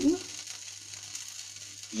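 Faint, steady sizzle of a milk-and-cream sauce simmering in a wok while it is whisked and thickened with flour.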